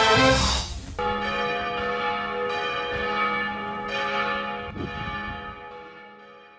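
Church bells ringing, with a fresh strike about every second over a lingering hum, fading out toward the end. In the first second, brass-led orchestral music ends in a rising whoosh before the bells come in.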